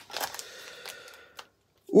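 Faint rustling and small clicks of hands rummaging inside a small cardboard product box, then a single sharp click about a second and a half in.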